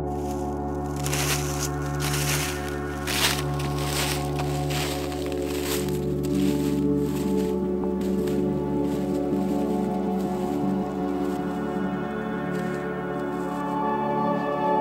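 Ambient background music of long held, chiming tones, with a series of short rustling noises in the first half.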